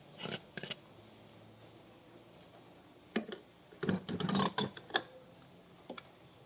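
Gloved hands handling small plastic parts on a tabletop: a few short clicks and knocks, in a small cluster at the start and a louder cluster around four seconds in.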